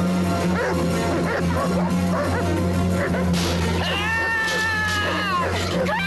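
Dark film-trailer score with a steady low drone, short pitched squeaks over it, then a long wailing cry that holds its pitch for about a second and a half and falls away near the end.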